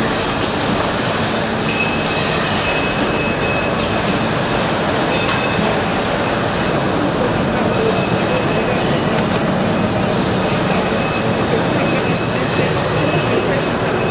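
Steady industrial din of running machinery on a steel-tube factory floor, with scattered light clicks and a faint high whine for about two seconds near the start.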